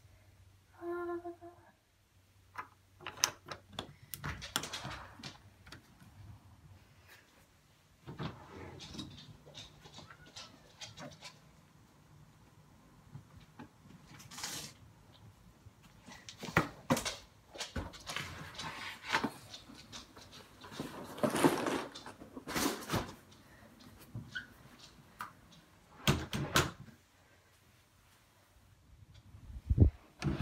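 Scattered knocks, scrapes and rustles of a cardboard delivery box being handled and moved, along with bumps from the phone that is filming it.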